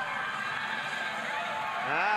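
Steady wash of noise from a swimming pool arena during a race, with freestyle swimmers splashing.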